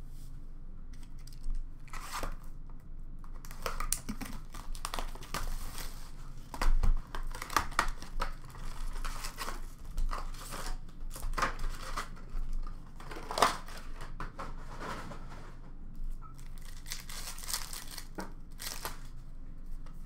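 Hockey card packs being torn open and handled by hand: irregular ripping and crinkling of the pack wrappers, with a few sharper rips standing out.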